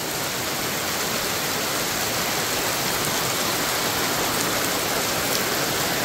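Steady rain falling at night, an even hiss of rain with no let-up.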